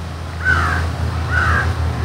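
A bird calling twice outdoors: two short, falling calls about a second apart, over a steady low hum.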